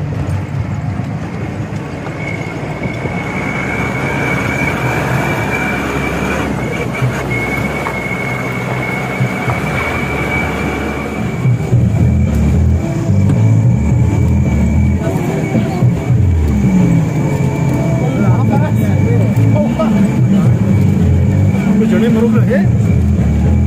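Jeep engine running under load from inside the cabin on a rough dirt track, getting louder about halfway through, its note rising and falling. A thin steady high-pitched whine runs through most of it.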